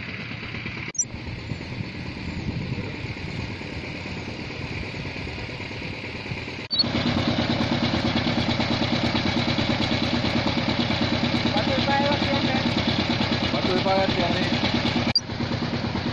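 A small engine idles loudly with a fast, even throb from about seven seconds in until a cut near the end. Before that there is a quieter steady outdoor background.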